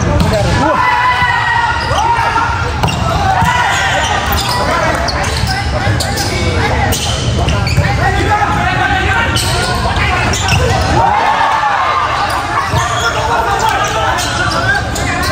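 A volleyball struck and bouncing with sharp thuds, one every second or two, under voices of players and spectators.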